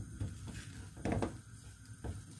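Wooden spoon stirring and scraping thick oatmeal fufu dough in a metal frying pan: a few soft scrapes and knocks, the clearest about a second in.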